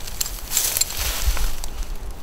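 A light metallic clink of climbing hardware (carabiner and figure-eight descender on a harness), then a rustling hiss of rope being handled and dry leaf litter shifting underfoot.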